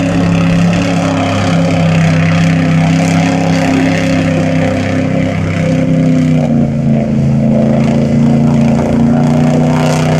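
LS V8 engine of a 1935 rat rod 4x4 running hard under load as the car ploughs through a flooded mud pit, with mud and water spraying. The engine note holds fairly steady, sags a little about six and a half seconds in, then holds again.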